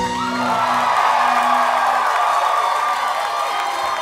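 Club audience cheering loudly as the song ends, with the last acoustic guitar chord ringing out and fading over the first couple of seconds.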